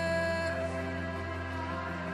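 Slow music of long held chords with no clear beat; a held higher note fades out about half a second in.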